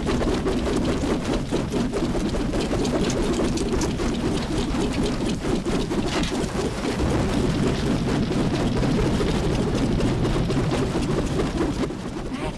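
A loud, steady rushing roar with crackles throughout: a film sound effect for a blast of magical fire engulfing the fighters.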